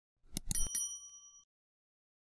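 Sound effect for a notification bell icon: a few quick clicks about half a second in, then a bright bell ding that rings and fades out within about a second.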